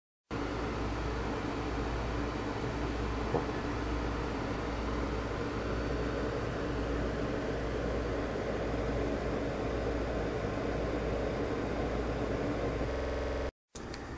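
Steady hum and hiss of background noise, with a few even low tones in it and a small tick about three seconds in. It cuts out briefly just before the end.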